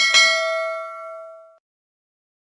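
Notification-bell sound effect: a click, then a single bell ding that rings with several tones and dies away within about a second and a half.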